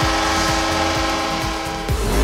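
Arena goal horn sounding one long, steady, multi-tone blast to mark a home-team goal, cutting off sharply near the end as up-tempo goal music takes over.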